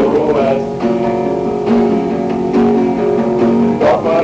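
Guitar playing chords in an instrumental break between sung verses of a home-made song, recorded on a small dictaphone.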